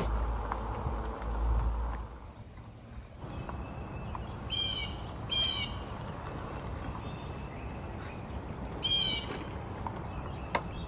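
A steady, high-pitched chorus of insects in summer woodland. A bird gives three short calls, two close together about halfway through and one near the end. A low rumble fills the first two seconds, then drops away.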